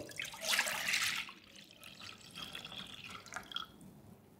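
Milk poured from a white ceramic jug into a copper saucepan. The pour is strongest in the first second, then thins to a fainter trickle that fades out near the end.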